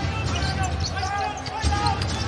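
Game sound from an NBA arena: a basketball being dribbled on the hardwood court over steady crowd noise.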